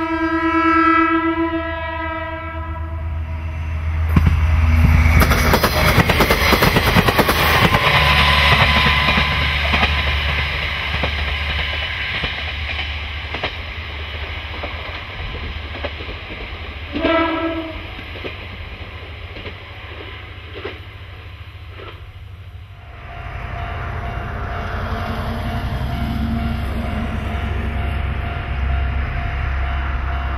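Diesel railcar's typhon horn sounding one blast of about three seconds. The railcar then runs past with loud engine and wheel noise, and gives a second short toot on the horn partway through. After a cut, another diesel railcar's engine runs steadily at a distance.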